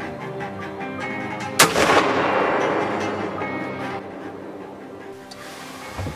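A single rifle shot about a second and a half in, its report echoing and dying away over about two seconds, heard over background string music.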